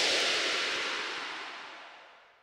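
The last sound of an electronic bassline track: a single burst of hiss-like noise with a reverberant tail that fades steadily and dies away near the end.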